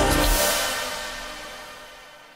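Closing ident music for a TV channel logo: the beat and bass stop about half a second in, and a last high shimmering hit rings on and fades away.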